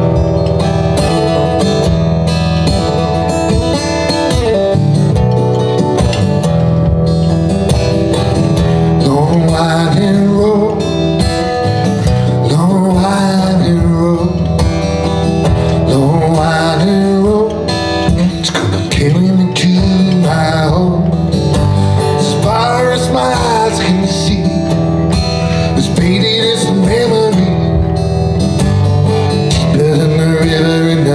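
Solo acoustic guitar playing a blues song, with a man's voice singing over it from about nine seconds in.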